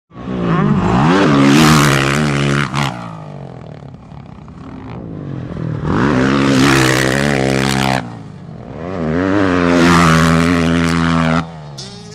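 Motocross dirt bike engine revving hard in three long pulls of the throttle, each cut off sharply. The last cut comes as the bike leaves the lip of a big step-up jump.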